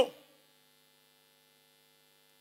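An amplified voice trails off at the very start, then a faint, steady electrical hum from the public-address sound system, a few thin unchanging tones.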